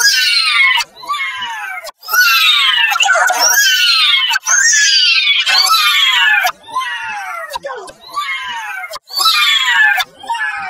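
A character's voice crying "No!" over and over, heavily processed with audio effects. There are about seven cries, each about a second long and sliding down in pitch. The loudest run together from about two to four and a half seconds in.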